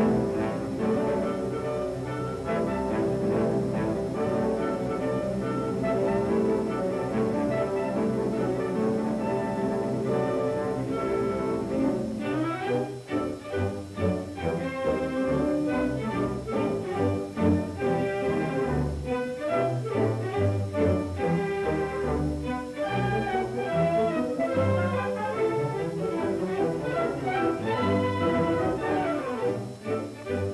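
Orchestral film score led by bowed strings, with low cello and bass lines. About halfway through, the held notes give way to shorter, more detached ones.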